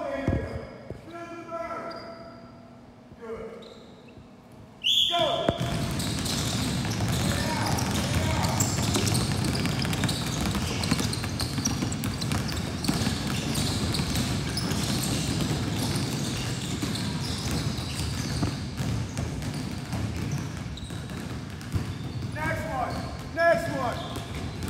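Many basketballs dribbled at once on a hardwood gym floor: a dense, continuous clatter of overlapping bounces that starts suddenly about five seconds in.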